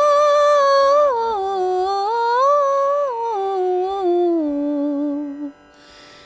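A woman's voice singing a wordless alap in G: a long held note, then a slow melody stepping down, rising once in the middle and settling on a low held note. A short breath follows near the end.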